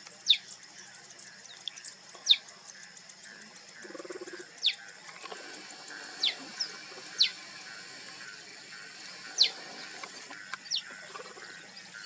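Cheetah cubs chirping: short, high, bird-like calls that drop quickly in pitch, repeated every second or two, over a steady high hiss.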